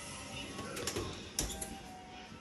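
Gas range oven door being handled and shut: a few light clicks and one sharp clack about one and a half seconds in, over a faint steady hiss.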